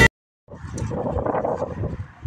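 Music cuts off abruptly, followed by half a second of silence. Then outdoor noise comes in: wind on the phone's microphone and the hum of traffic.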